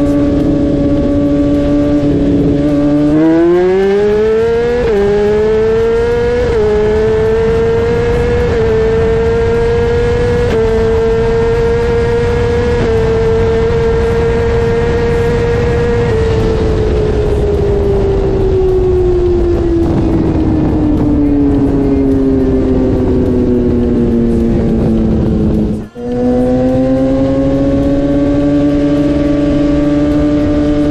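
Sportbike engines of a roll race, inline-four superbikes, at a steady rolling pace, then at full throttle accelerating hard through about five quick upshifts, each a short dip in pitch. The engine note then falls slowly as they back off and slow down. After a sudden break it runs at a steady pitch again, beginning to rise near the end.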